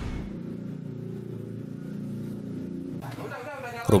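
A steady low motor hum that cuts off suddenly about three seconds in, followed by faint voices.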